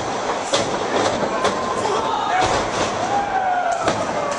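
Wrestlers' blows landing as sharp slaps in the ring, with a heavier, deeper thud about halfway through as a body hits the ring mat. Spectators shout over it, one with a long drawn-out yell.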